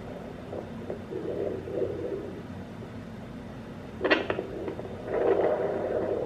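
Sonoline B home fetal doppler's speaker giving low, scratchy whooshing as its probe sits on the gelled belly, with a sharp click about four seconds in.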